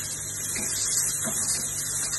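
Steady kitchen background noise while food is stirred in a pan on a gas stove: an even hiss with a low hum underneath.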